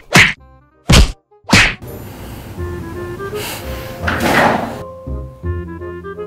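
Three loud whacks in quick succession in the first two seconds, as the man's head is struck. A light tinkling melody follows, with a swelling whoosh about four seconds in.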